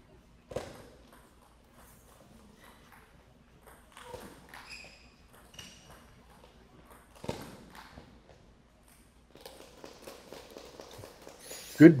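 Table tennis rally: the ball knocking sharply off paddles and table at irregular intervals, the loudest hits about half a second in and about seven seconds in, with brief squeaks between.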